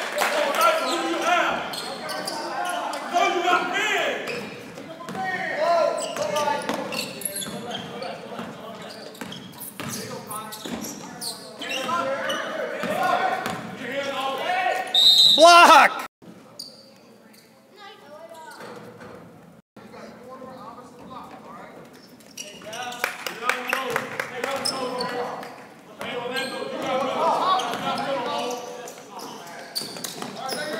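Indoor basketball gym during play: voices of players and spectators echoing in the hall, with a basketball bouncing on the hardwood court. A short high referee's whistle sounds just past the middle, and then the sound drops abruptly to a quieter stretch before the voices pick up again.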